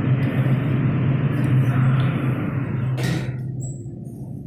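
Schindler passenger lift car travelling in its shaft: a steady low hum under a rushing noise. The rushing dies away after a sharp click about three seconds in, leaving the low hum.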